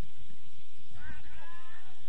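A distant shout from a player on the pitch: a single drawn-out, high-pitched call of just under a second, starting about a second in, over a steady low rumble.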